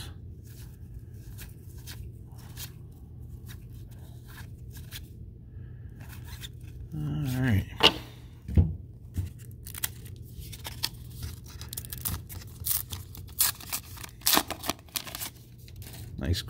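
A foil baseball card pack being torn open by hand: a quick run of sharp rips and crinkles through the second half, after quieter rustling of cards being handled.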